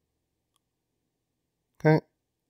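Near silence, broken only by a man saying "Okay" near the end.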